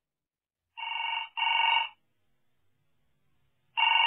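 Telephone ringing with the British double ring: a pair of short rings about a second in, and the next pair starting near the end.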